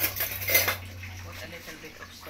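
A metal utensil clinks against a metal wok twice. The first clink comes right at the start, and a louder one with a short ring follows about half a second in.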